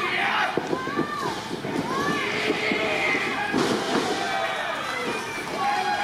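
Pro-wrestling ring sounds: a few sharp thuds of bodies striking and hitting the ring canvas, with scattered shouts and calls from a small crowd.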